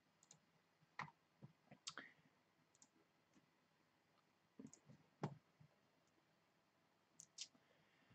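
Near silence with about eight faint, scattered computer mouse clicks.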